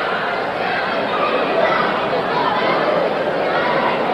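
Arena crowd chatter: a steady murmur of many overlapping voices in a large hall, with no single voice standing out.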